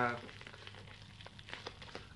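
Paper envelope and sellotape crackling faintly as fingers pick at the taped seal, with small ticks.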